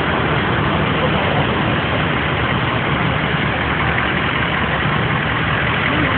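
A vehicle engine idling steadily under a constant wash of noise.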